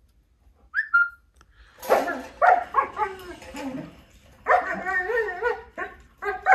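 Dog vocalizing: a short high whine about a second in, then two runs of barking and yelping, the first from about two seconds in and the second from about four and a half seconds.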